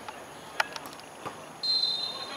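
Referee's whistle blown in a single high, steady blast that starts near the end, signalling the corner kick to be taken. Before it come a few sharp clicks, the loudest a single knock about half a second in.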